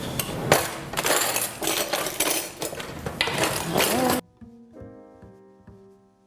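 Loud kitchen handling noise, rustling with clinks and clatters. About four seconds in it cuts off suddenly and soft piano music takes over.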